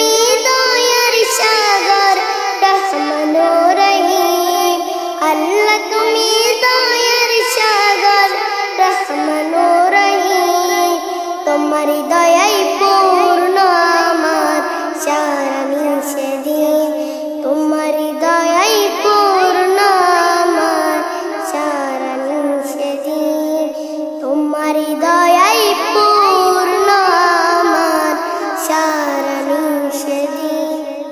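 A boy singing a Bengali Islamic gazal (naat) in a high child's voice, in long unbroken melodic lines that rise steeply in pitch a few times.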